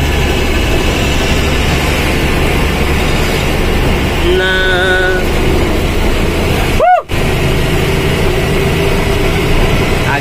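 Steady engine and road rumble inside a truck cab as it runs down a hill road. A vehicle horn sounds briefly about four and a half seconds in. Near seven seconds there is a short swooping blip with a momentary dropout.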